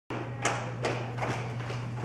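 Four soft taps, evenly spaced less than half a second apart, over a steady low hum.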